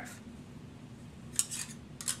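Quiet room, then a short burst of rustling and light clicking about one and a half seconds in as clothing is handled and shown.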